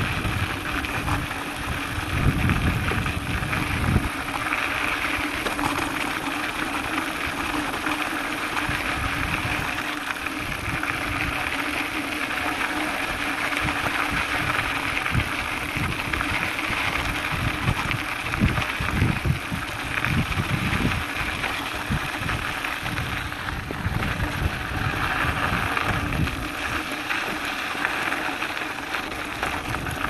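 Mountain bike rolling downhill on a gravel trail: a steady rush of tyre noise on loose gravel and rattle of the bike, with uneven low bursts of wind buffeting the microphone.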